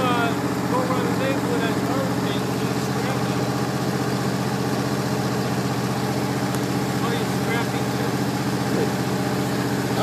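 Exmark Lazer Z zero-turn mower engine running at a steady, even speed as the mower is driven along a paved road.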